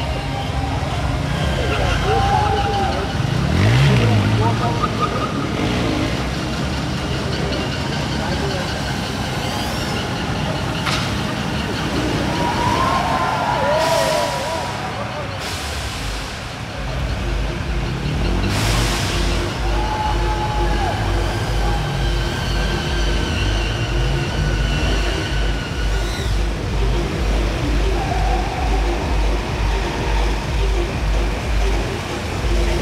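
Bajaj Pulsar stunt motorcycles revving over a crowd din, with a rising rev a few seconds in. A few short hissing blasts come around the middle, as the stage's plume jets fire. From about halfway a steady pulsing music beat joins in.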